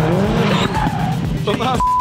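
Subaru rally car driven hard on a track, its engine revving up with tyres squealing. Near the end a voice is cut by a short steady beep.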